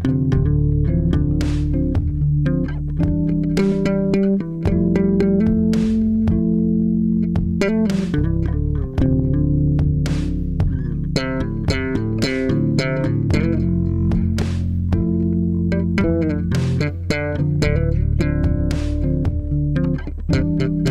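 Electric bass guitar playing a groove line over a backing track, with sharp percussion hits recurring about every two seconds and held chords above the bass.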